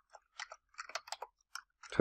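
Computer keyboard being typed on: a run of light, irregular key clicks, about five or six a second.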